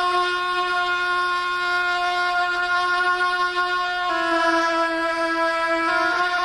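A wind instrument holding one loud, horn-like note with many overtones, which drops to a slightly lower, wavering note about four seconds in.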